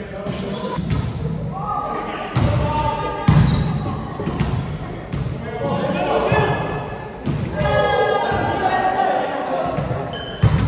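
Volleyball rally in a gym: several sharp thuds of the ball being hit and striking the floor, echoing in the hall, mixed with players' loud shouted calls.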